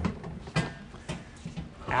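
A few light knocks and clunks from a wheeled metal cart with a plastic flavor station being rolled up and set against the rear floor of a van.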